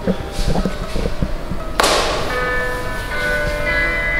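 A sudden struck hit about two seconds in, followed by several steady bell-like tones that keep ringing.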